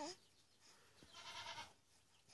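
A baby's faint cooing: a short coo at the start, then a breathier, higher-pitched vocal sound about a second in.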